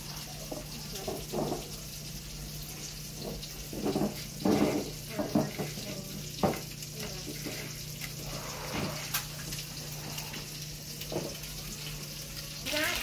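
Hands squishing raw fish chunks through a wet mayonnaise coating in a glass bowl and pressing them into panko crumbs. The sound is soft wet squelching and crumb rustling, busiest about four to five seconds in, with a few sharp clicks. A steady low hum runs underneath.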